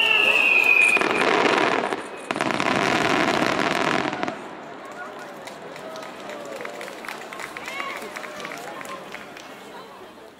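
Fireworks barrage finale: a high whistle that falls slightly and ends about a second in, then loud, dense bursts and crackling for a few seconds. These die away by about four seconds in to a much quieter spell of scattered crackles as the embers fall, with faint voices.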